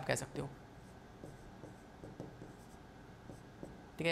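Stylus writing on a touchscreen board: faint, irregular scratches and light taps as a word is handwritten.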